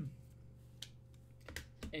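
A few light clicks and taps: a single click just under a second in, then a short cluster near the end, over a steady low hum.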